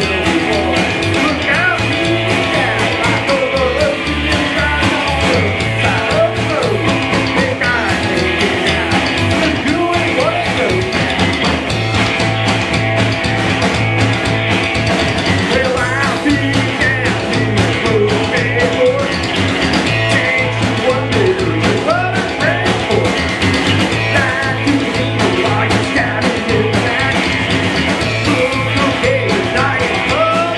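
Live rockabilly band playing loudly: electric guitar, upright bass and drum kit, with a man singing.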